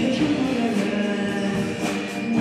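Live band playing a song: a singer over electric guitars, a drum kit and keyboard.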